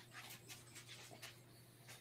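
Near silence: a steady low hum with faint, short noises a few times a second.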